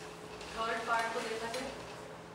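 Marker scratching and squeaking on a whiteboard as something is written, with a woman's voice about half a second in, for about a second.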